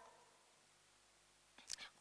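Near silence: a pause in a woman's speech, her voice briefly returning near the end.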